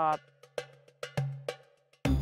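Sparse background music: about three sharp struck percussion notes over a low held tone, with fuller music coming in at the very end.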